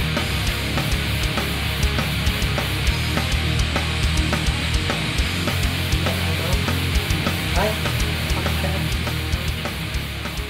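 Heavy rock music with distorted electric guitar and a steady drum beat, played loud.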